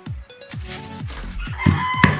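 A rooster crowing, loudest near the end, over background music with a steady beat.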